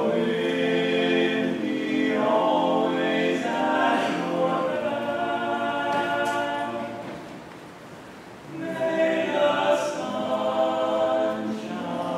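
An a cappella choir of students singing held chords without accompaniment. The singing drops to a lull about seven seconds in and swells back up about a second and a half later.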